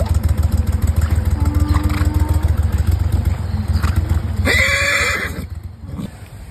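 A horse whinnies loudly once, about four and a half seconds in, over the steady low drone of a small boat's motor.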